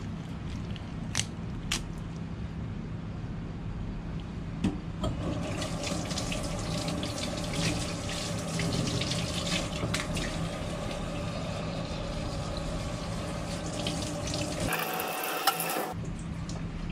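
Kitchen tap running and water splashing as the skinned filefish is rinsed under it. The water starts about five seconds in, after a few light handling clicks, and it gets brighter and louder briefly near the end. A steady low hum runs underneath.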